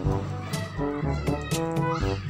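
Upbeat background music with a steady, repeating beat, with a cat-like meow over it.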